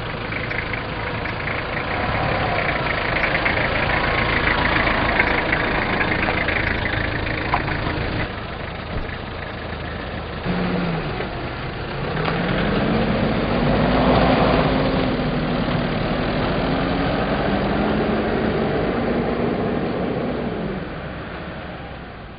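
Vehicle engines running as an SUV and pickup trucks drive on a snowy road, one towing a loaded trailer. About twelve seconds in, one engine's note rises as it accelerates and then holds steady.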